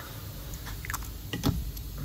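Hands handling the new NOx sensor and its plastic packaging: a few small clicks and crinkles, then a heavier knock about one and a half seconds in.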